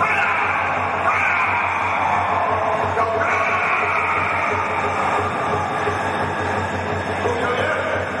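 Burmese traditional ringside fight music: a shrill hne oboe plays a wavering, gliding melody over drumming.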